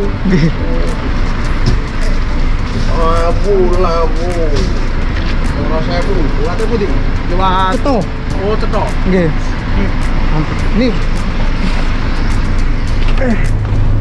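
A man talking, with other voices, over the steady low rumble of bus engines idling close by.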